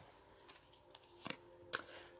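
Faint clicks and taps of tarot cards being handled and laid down on a cloth, with two clearer taps in the second half.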